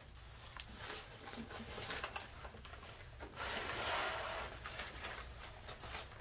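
Quiet rustling and scraping of foam wrapping and plastic wrap being handled and pulled off a packed unit, with a few light ticks and a longer stretch of rustling about three and a half seconds in.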